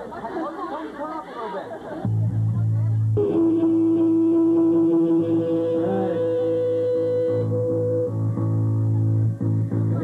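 Amplified electric guitar and bass holding long sustained notes: a loud steady low drone comes in about two seconds in, and held guitar tones ring out above it a second later. Voices chatter under the first two seconds.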